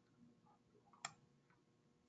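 Near silence: room tone, with one short click about a second in.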